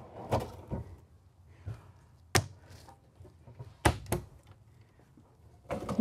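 Overhead kitchen cabinet being worked by hand: a wooden pull-out shelf sliding and the cabinet doors knocking shut. There are a few light clicks and two sharp knocks about a second and a half apart near the middle.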